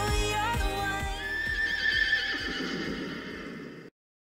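Intro music with a beat, joined about a second in by a horse whinny, a long wavering call that fades away; all sound cuts off just before the end.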